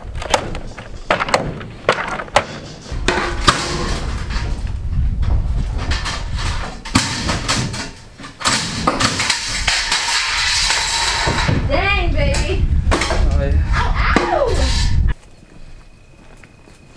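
Scrap wood, boards and household debris clattering and banging as they are thrown into and trampled in a steel dumpster, a run of sharp knocks and crashes over a low rumble. Indistinct voices come in near the end, and the sound drops off suddenly shortly before the end.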